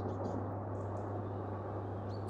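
A pause between lines: background ambience with a steady low hum under faint, even noise.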